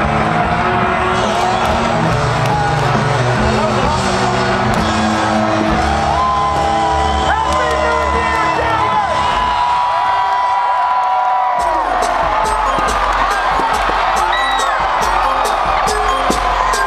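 Loud live mashup DJ music with sung vocal lines over a cheering, whooping crowd. The bass drops out about ten seconds in and comes back with a driving beat a couple of seconds later.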